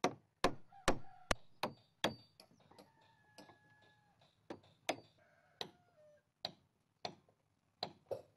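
Hammer striking a chisel against the wooden hull of a boat under construction: a quick run of sharp knocks in the first two seconds, then slower, irregular single strikes.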